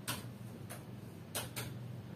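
Computer keyboard keystrokes: four sparse, faint key clicks, over a faint steady low hum.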